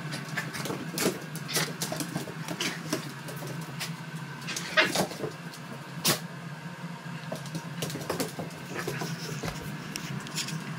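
Two dogs play-wrestling on a hardwood floor: claws clicking and scrabbling, with irregular knocks and bumps, the loudest about five and six seconds in. A steady low hum runs underneath.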